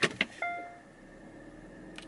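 Two sharp clicks, then a single short electronic chime from the car that rings and fades within half a second, the kind a car gives as reverse gear is selected. After it, only the low steady hum of the car's cabin.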